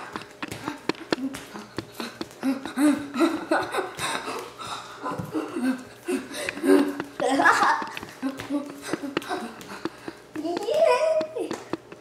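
Children's voices talking and laughing, with no clear words. Many small clicks and taps are scattered through it.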